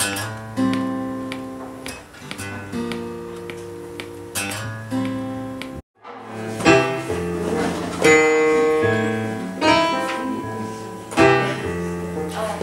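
Live instrumental music: chords played on an electronic keyboard, each note starting sharply and then dying away. The music breaks off abruptly a little before the middle, then starts again louder and fuller.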